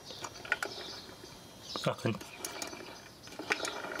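Light mechanical clicks and ticks from an old record-changer turntable's platter and spindle mechanism, over a faint steady mechanical hum.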